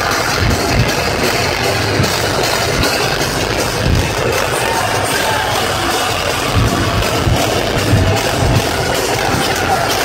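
A live metal band playing loud through a concert PA, with heavy guitars and pounding drums, heard from within the crowd, with crowd noise mixed in.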